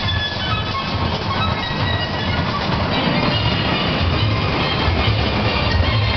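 Recorded show music playing over loudspeakers, with a strong bass and bright high notes.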